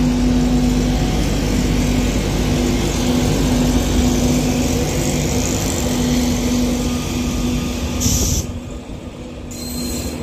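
LNER InterCity 225 train, a Class 91 electric locomotive hauling Mark 4 coaches, pulling away with the coaches running past close by: a loud steady rumble of wheels on rail with a low hum. A brief high-pitched burst comes about eight seconds in.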